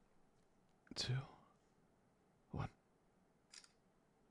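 A soft male voice counting down 'two… one' with long pauses, and a brief faint click near the end.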